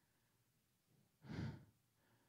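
A man's single short sigh, breathed into a handheld microphone, a little past the middle of an otherwise near-silent pause.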